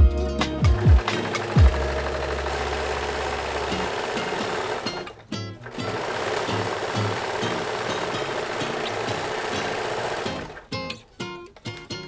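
Brother serger (overlock machine) running fast as fabric is fed through it. It runs in two long stretches, with a short pause about five seconds in, and stops near the end. Guitar background music plays along with it.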